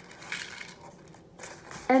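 Paper plates and ribbon being handled, a faint rustle and scuffing of paper, before a woman's voice starts just before the end.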